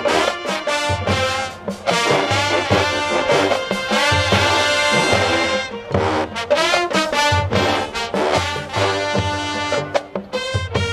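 Marching band playing loud brass music, trumpets and trombones over sousaphones and drums, with the low notes falling on a steady beat.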